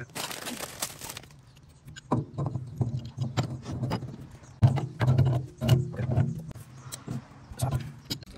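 Metal pipe fitting being handled and screwed by hand onto a brass ball valve: a run of irregular clicks, knocks and clinks of metal on metal.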